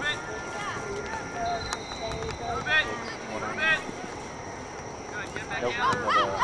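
Distant shouts and calls from a lacrosse field: short calls around the middle and more voices near the end, over a steady high whine.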